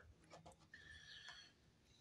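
Near silence: room tone, with a faint short high tone about a second in.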